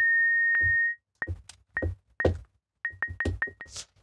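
A resonant analog-modelled Auto Filter pinged by short white-noise impulses rings at a single high pitch. For about the first second it self-oscillates as a steady sine-like tone, broken by one click. It then gives a series of short high pings, each with a dull click, coming faster after about three seconds.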